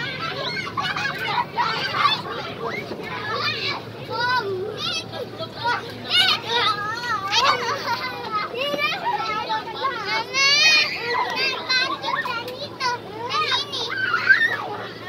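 Young children shouting and squealing at play, their high-pitched voices overlapping throughout.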